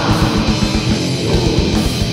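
War metal band playing: heavily distorted electric guitars over rapid, evenly spaced bass drum strokes, which break off briefly about a second in.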